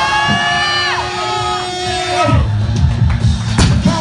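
Several people yelling long drawn-out shouts of encouragement, 'go', as a heavy deadlift is pulled, the shouts falling away about two seconds in. A single sharp knock near the end as the loaded barbell comes down onto the platform.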